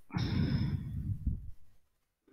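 A person's long breath out, a sigh close to the microphone, that fades away after about a second and a half.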